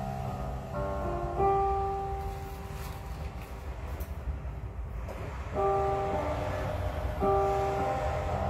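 Digital piano played slowly: a few chords, then one chord held and left to fade for about three seconds, then new chords struck about five and a half and seven seconds in. A steady low hum runs underneath.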